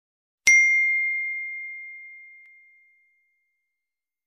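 A single bright ding, the chime sound effect of a subscribe-button animation, struck once about half a second in and ringing out as one clear high tone that fades away over about two and a half seconds.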